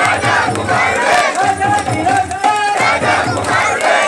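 A crowd of Ayyappa devotees chanting loudly together, many male voices in unison, with hand claps keeping the beat.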